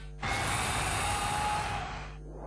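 TV channel ident sound effect: a steady, rough noise with faint tones over it starts suddenly about a quarter second in and tails off near the end.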